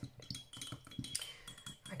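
A paintbrush rinsed in a glass water jar, making a few light clinks and taps against the glass.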